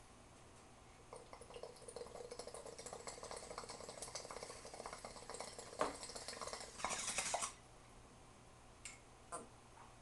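Water bubbling in a glass vodka-bottle bong as smoke is drawn through it, starting about a second in and running for several seconds, then a short rush of air before it stops.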